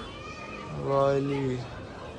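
A man's long hesitant 'uhh', held for about a second and falling slightly in pitch, while puzzling over writing he cannot read.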